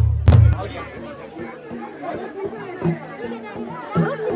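Two deep drum beats at the start, then the drumming stops and a crowd of people chatter.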